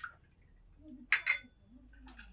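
Two quick, ringing clinks of glass about a second in, with a short click at the start, as an ice-filled highball glass is topped up with orange juice.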